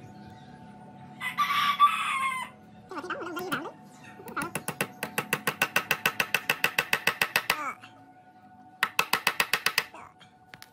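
A rooster crows once, a little over a second in, and that is the loudest sound. Then comes a rapid, even run of clicks, about nine a second, lasting some three seconds, and a shorter run of the same near the end.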